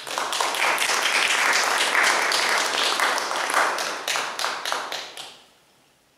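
Applause from a small group of people clapping by hand. It starts suddenly and dies away about five seconds in, ending with a few scattered claps.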